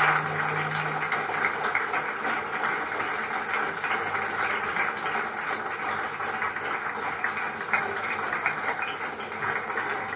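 Pause between tracks of a jazz recording played over a hi-fi: a low, steady hiss with faint scattered clicks, after the last held note of the previous tune fades out about a second in.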